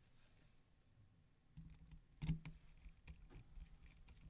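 Faint clicks and taps of a screwdriver and gloved hands working on a phone's plastic chassis, with a low hum starting about one and a half seconds in. One sharper click comes just past the middle.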